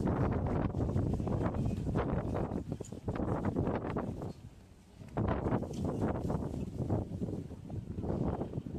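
Wind buffeting the microphone in gusts, a rough low rumble that drops away briefly about halfway through and then returns.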